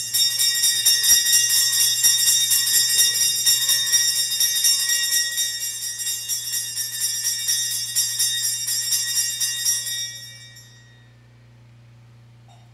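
Altar bells (Sanctus bells) shaken in a rapid, continuous ringing to mark the elevation of the consecrated host. The ringing stops about ten seconds in and dies away.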